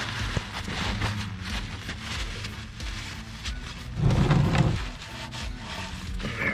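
Paper towel rubbing and rustling against the underside of the oil pan as a gloved hand wipes around the drain hole, with a brief louder low-pitched sound about four seconds in. Faint background music runs underneath.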